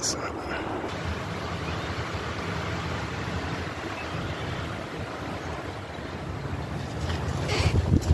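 Wind buffeting a phone's microphone: a steady rumbling noise, with a short rustle of handling near the end.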